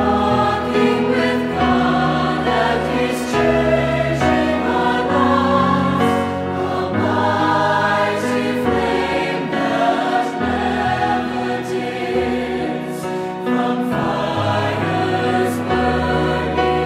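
Background music: a choir singing a slow religious song in long held chords.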